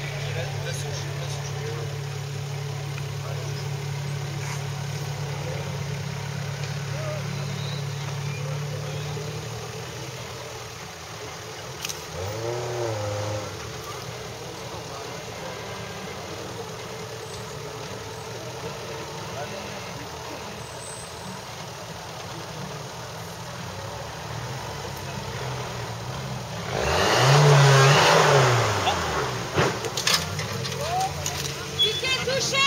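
Small Suzuki SJ-type 4x4's engine working slowly up a steep dirt bank: steady low running, a short rev about twelve seconds in, then a loud rev near the end with a burst of noise as the tyres dig and scrabble in the dirt.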